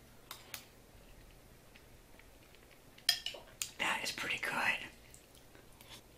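Eating a mouthful of stew: two light clicks of a metal spoon as the spoonful goes in, then chewing and wet mouth sounds, with a muffled, mouth-full voice sound in the second half.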